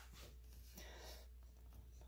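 Near silence: faint rustling and handling noise, strongest about half a second to a second and a quarter in, over a steady low hum.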